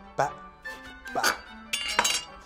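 Chef's knife slicing through an eggplant and knocking on a wooden cutting board, a few short cuts over steady background music.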